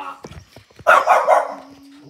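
A dog barking once, loud, about a second in, as two dogs play together.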